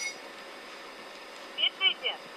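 Faint steady hiss of a recorded telephone line, with a couple of short clipped bits of a voice near the end.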